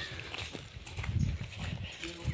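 Footsteps on dry leaf litter, uneven scuffs and low thuds, heaviest about a second in.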